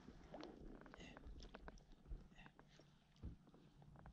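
Near silence, with a few faint scattered clicks and ticks.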